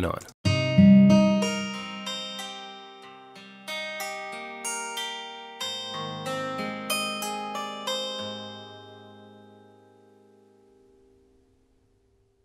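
Ample Guitar M sampled acoustic guitar playing a phrase of about fifteen plucked notes, each ringing and decaying, heard through the compressor's detection-focus band. The last notes ring out and fade away about ten seconds in.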